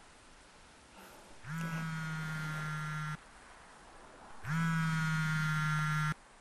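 Mobile phone ringing with an incoming call: two long, steady, buzzing rings of about a second and a half each, with a pause between, the second louder.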